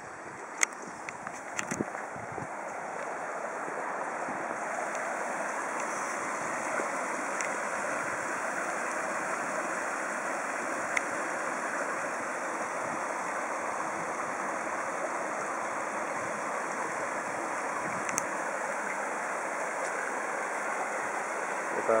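Water of a rocky stream rushing over a small dry-stone weir, a steady rush that grows louder over the first few seconds and then holds. A few sharp clicks come in the first two seconds.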